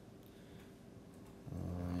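Quiet room tone, then about one and a half seconds in a man's low, drawn-out vocal hum, held steady for about a second.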